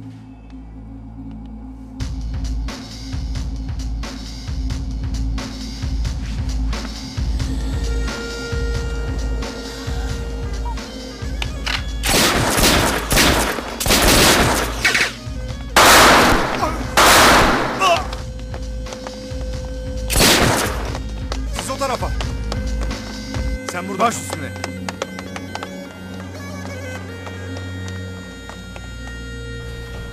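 Dramatic soundtrack music with a steady low beat, broken in the middle by a run of about six loud bursts of gunfire.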